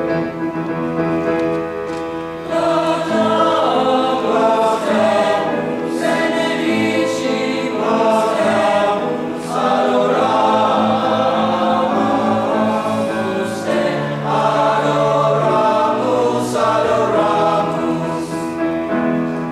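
High-school men's choir singing in parts with grand piano accompaniment; the singing grows louder about two and a half seconds in.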